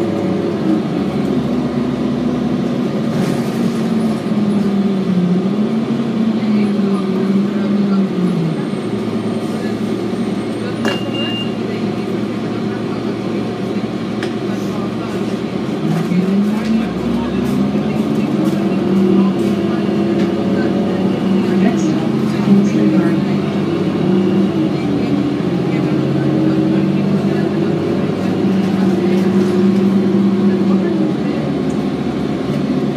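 Diesel engine of a 2007 Orion VII city bus heard from inside the passenger cabin. It drops in pitch as the bus slows over the first several seconds, runs low for a while, then rises again as the bus accelerates a little past halfway and holds steady toward the end.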